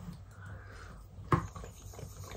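Quiet mouth sounds of someone chewing a soft vanilla marshmallow, with one short sharp click about a second and a half in.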